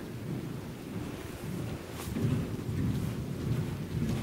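Horse cantering on soft indoor-arena sand footing: dull, rumbling hoofbeats that grow louder in the second half, with a short click about two seconds in.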